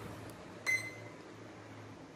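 A single short electronic beep from the drone's flight-controller buzzer, about two-thirds of a second in. Otherwise only faint room noise.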